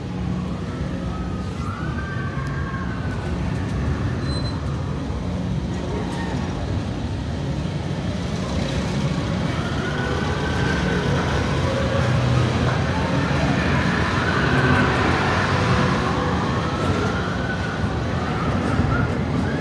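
Tomorrowland Transit Authority PeopleMover ride vehicle moving along its elevated track: a steady low hum with rushing noise that grows a little louder in the second half, and faint wavering high sounds over it.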